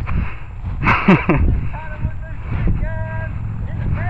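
A man laughs in a short burst about a second in, over a steady low rumble on the microphone.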